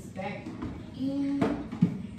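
Plastic clicks and knocks as the emptied water tank is pushed back into a small room dehumidifier: a light click, then a sharper, louder knock near the end. A woman's brief vocal sounds and a short held note come before them.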